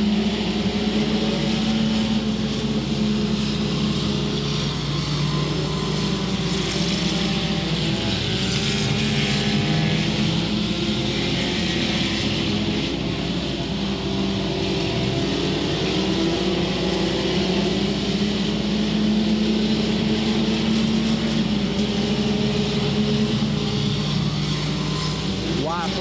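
A pack of front-wheel-drive race cars running hard around a dirt oval, their engine notes wavering up and down as they go through the turns.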